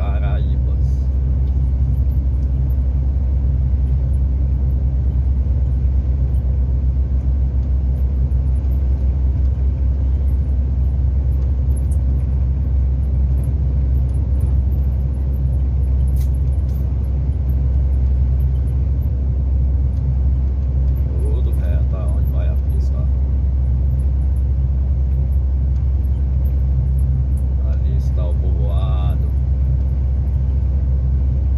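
Semi-truck's diesel engine and road noise heard from inside the cab while cruising on the highway: a steady, deep drone.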